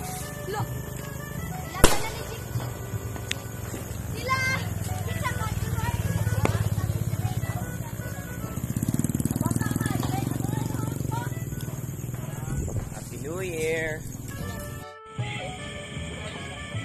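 Background music and people's voices, with one sharp firecracker bang about two seconds in and a few fainter pops later.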